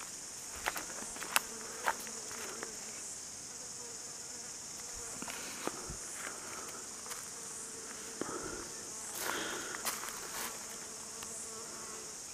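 A steady high-pitched insect chorus, with a few sharp clicks and rustles over it.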